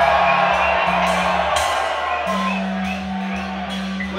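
Live hip-hop concert over a club PA: a deep, steady bass beat with the crowd cheering and whooping over it, loudest in the first second or two and easing off.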